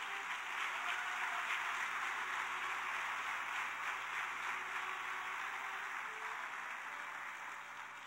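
Congregation applauding: a dense, even clapping that swells in over the first second and slowly dies away toward the end.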